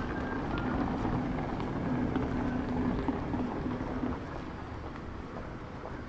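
Town street ambience with a steady low engine hum from a vehicle, which fades about four seconds in.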